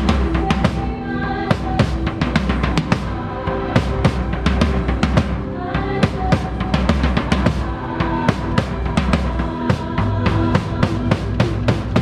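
Drum kit played with sticks in a steady groove, with bass drum, snare and cymbals, heard close from the drummer's seat over a band's sustained bass and keyboard tones. Near the end the strikes come in a quick, dense run, and then the drums drop out.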